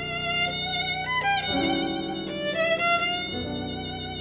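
Violin playing a slow melody with wide vibrato, sliding between notes about a second in, over low sustained accompaniment chords that change twice.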